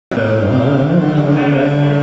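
Male singer's voice opening a Nepali song with a long note that slides up in pitch during the first second and is then held steady.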